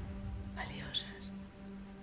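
Soft ambient meditation music of sustained, steady tones. A brief quiet breathy vocal sound comes about half a second in.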